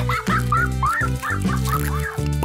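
Background music with steady low notes, with a quick run of about nine short, bending high notes over it, about four or five a second.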